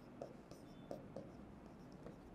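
Marker pen writing on a whiteboard: a few faint, short strokes as letters are drawn.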